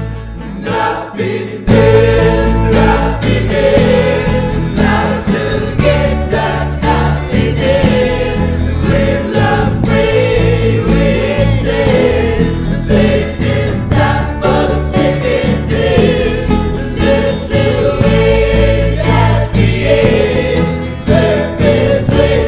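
Lo-fi psych-folk song: a sparse, quieter passage that swells into the full arrangement about two seconds in, with layered singing voices over a steady beat.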